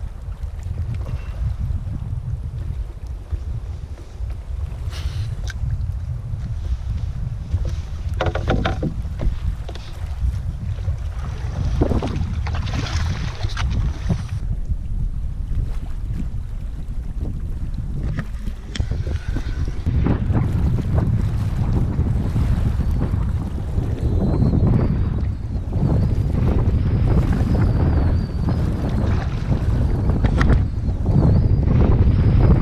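Wind buffeting the microphone of a camera mounted on a canoe, with water lapping against the hull on a choppy lake. The wind gets stronger in the second half, and there are a couple of brief louder noises about a third of the way in.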